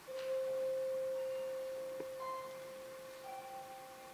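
Symphony orchestra in a quiet passage: one long high note starts at once and slowly fades, with a few soft, scattered higher notes above it.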